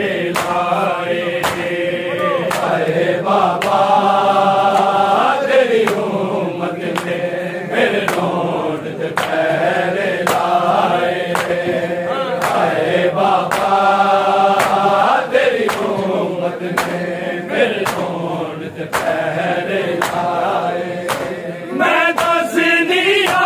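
Male voices chanting a noha, a mourning lament with long held notes, over a steady beat of open-hand slaps on bare chests (matam) about one and a half a second.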